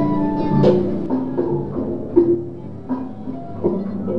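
A small pipe organ sounding a series of held notes at changing pitches, with a few knocks in between.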